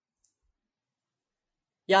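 Near silence in a pause between spoken phrases, broken only by a faint tiny click about a quarter second in; a woman's voice starts again right at the end.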